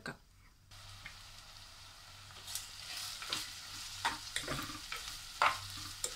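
Sliced onions frying in hot oil in a clay pot: a steady sizzle that starts suddenly about a second in and slowly grows louder. A spatula stirring them adds several short scrapes and knocks.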